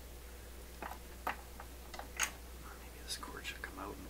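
A few sharp clicks and light knocks as the PYE Columbia 360's metal power-supply chassis is handled and fitted against the record player's wooden cabinet. The loudest click comes just over two seconds in.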